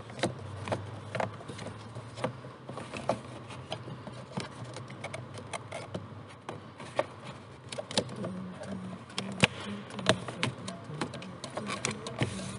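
Scattered small clicks and creaks of plastic dashboard trim around a Chevrolet's instrument cluster being pulled and worked loose by hand, over a steady low buzzing hum.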